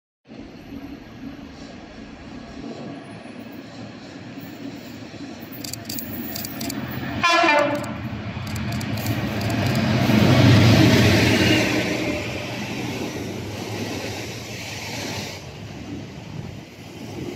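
Class 69 diesel locomotive (EMD V12 two-stroke engine) approaching and passing, hauling a Class 465 electric unit: a short horn blast about seven seconds in, then the engine and wheel-on-rail noise grow to their loudest about ten seconds in and ease off as it goes by.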